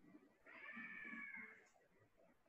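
A single faint, high-pitched drawn-out call lasting about a second, rising and falling slightly in pitch, in a quiet room.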